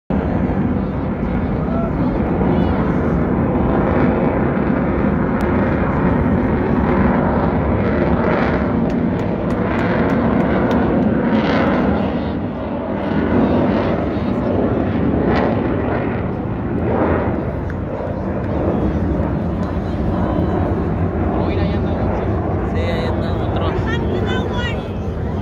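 Loud, continuous jet engine roar from a fighter jet flying overhead, swelling and dipping as it passes.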